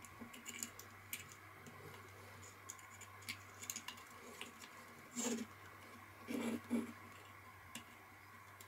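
Faint, scattered clicks and light scrapes of a small screwdriver prying at a portable Bluetooth speaker's casing. Three brief low sounds come just past the middle.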